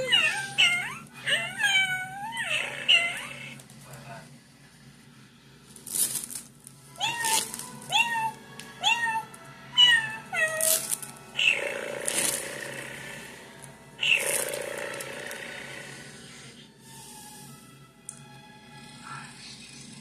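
Cat meowing: a quick run of short meows, then about four more roughly a second apart. Two longer, breathy rushing sounds follow.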